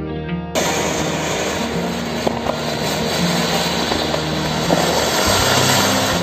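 Flower-pot (anar) ground fountain fireworks hissing steadily as they spray sparks, with a few sharp crackles. The hiss starts suddenly about half a second in. Background music with guitar plays underneath throughout.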